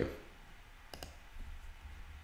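Computer mouse button clicked twice in quick succession about a second in, over quiet room tone.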